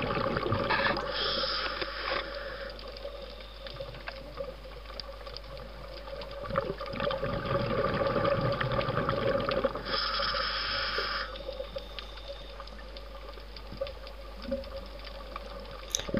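Underwater sound as picked up by a scuba diver's camera: steady water noise with a faint hum, and two short hissing bursts about a second in and about ten seconds in, typical of breaths drawn through a scuba regulator.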